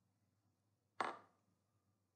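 A single sharp computer-mouse click about a second in, dying away quickly; otherwise near silence.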